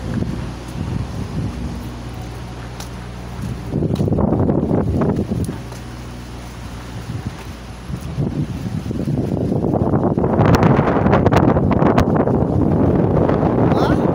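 Wind buffeting a phone microphone while the person filming walks outdoors, a rough rumbling noise that swells and gets louder in the last few seconds, over a faint steady low hum.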